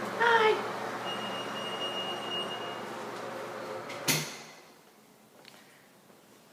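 A steady mechanical hum, like a small-room fan, runs until a single sharp click or knock about four seconds in, when the hum cuts off suddenly.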